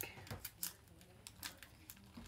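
Faint handling noise: a handful of light clicks and ticks from fingers on a trading card and the phone.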